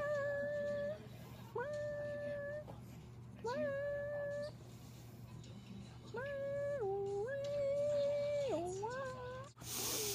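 A woman singing long, wordless held notes in a high voice, about a second each with short pauses between. Most are on one pitch; the later ones step down and back up and end on a rising slide. A low steady hum runs underneath.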